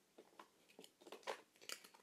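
Faint, scattered clicks and rustles of handling as a slime is put back into its container.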